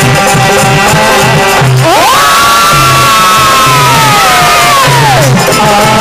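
Live bhajan band music with hand-played dholak drums keeping a beat. About two seconds in, a loud held note swoops up, holds for about three seconds and slides back down.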